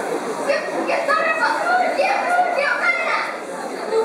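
A group of schoolchildren speaking in unison in a choral-speaking performance, their voices rising and falling in pitch, with a short pause near the end.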